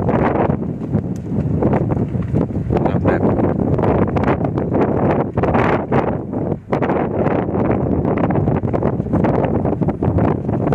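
Wind buffeting the microphone: a loud, gusting rumble that rises and falls, with a brief lull about six and a half seconds in.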